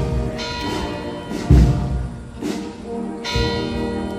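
Church bells ringing, with a heavy strike about every second and a half to two seconds and their tones hanging on in between.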